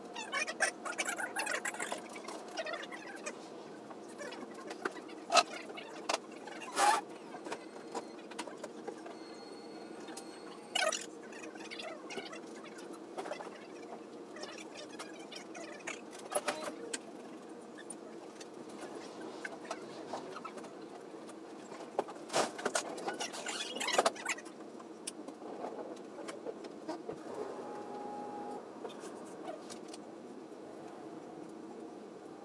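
Scattered knocks and clunks as a blanket-wrapped grand piano is pushed and handled, over a steady background hum.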